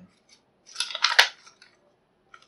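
Paper rustling as a stiff paper label card is handled and set down on a tabletop, with one sharp tap a little past a second in.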